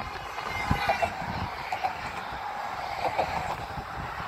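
Steady noise of traffic passing on the highway beside the walkway, with faint chatter from passing pedestrians.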